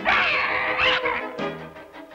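Cartoon chase music with a cat yowling over it, two rising yowls in the first second.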